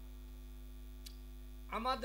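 Steady electrical mains hum from the stage sound system, with a faint click about halfway through. A man's voice comes in near the end.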